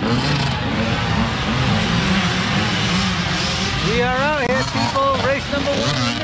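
Small youth dirt bike engine running as the bike rides past close by, a steady wavering drone that gives way to a voice about four seconds in.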